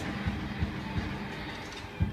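Hip-hop backing beat in the gap of the hook, where the track puts gunshot sound effects: a few muffled low shots about 0.4 s apart over a low bass rumble.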